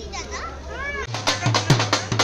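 People's voices, children's among them, then from about halfway in a dhol beaten with sticks in a quick, even beat of about four to five strokes a second, each with a deep thump.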